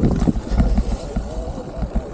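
Sur-Ron Light Bee electric dirt bike riding over bumpy grass: irregular low thumps from the jolts and wind rumble on the microphone, with a faint wavering electric motor whine.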